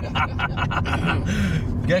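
Car interior drone of engine and road noise under a man's low talk, with a short airy hiss in the second half.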